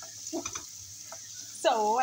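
Minced garlic and whole dried red chillies sizzling in hot oil in a nonstick pan, with a spatula stirring and tapping against the pan a few times.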